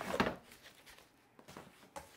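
Cardboard box flaps and foam packing being handled as a shipping box is unpacked: a short scraping rustle at the start, then a couple of light knocks as the foam insert is set down.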